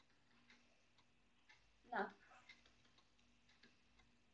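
Near silence with a few faint, scattered clicks as handwriting is entered on a computer screen, and one brief spoken word about two seconds in.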